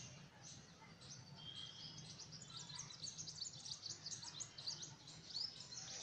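Birds chirping in the background, a quick run of many short, high chirps from about two seconds in, over a faint low hum.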